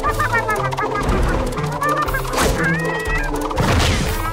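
Cartoon sound effects: high warbling, squawk-like squeals over steady background music, with a short burst about two and a half seconds in and another near the end.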